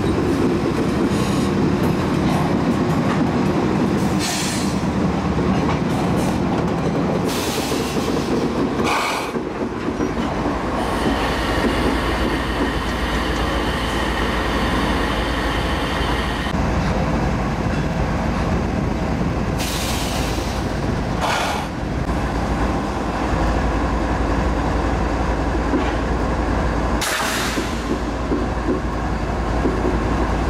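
Norfolk Southern GE ES44DC diesel locomotives rolling slowly past at close range: a steady low engine drone, wheels clacking over rail joints in scattered sharp strikes, and a high wheel squeal for several seconds in the middle.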